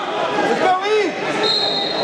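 Coaches and spectators shouting in a reverberant gymnasium during a wrestling bout. A short, steady, high referee's whistle blast sounds about one and a half seconds in, stopping the action.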